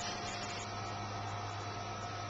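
Steady background hum with hiss and a faint high whine, unchanging throughout, with no distinct event.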